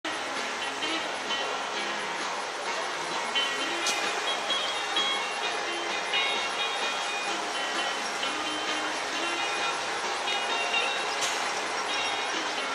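A Vekoma family boomerang roller coaster train being hauled up its inclined lift spike, a steady mechanical running noise mixed with background park chatter and music, with a sharp click about four seconds in and another near the end.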